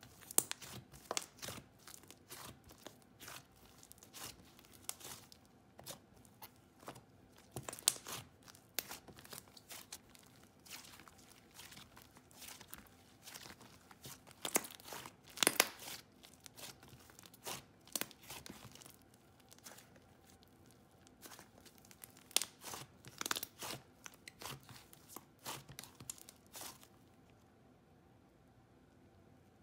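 Slime OG's Kawaii Squish, a thick, clay-heavy butter slime, being pressed, stretched and pulled apart by hand: irregular soft pops, clicks and tearing sounds, with a dense run of them about halfway through.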